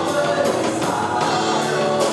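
Live worship band playing a slow song: electric guitar, bass, keyboard and drum kit with cymbal strikes, and a sung vocal line over them.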